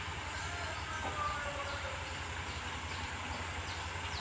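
Quiet outdoor background: a steady low hum with faint, short high chirps over it.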